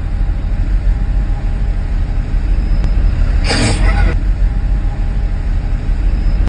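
City bus engine running right alongside, a steady low rumble, with a short hiss of its air brakes about three and a half seconds in.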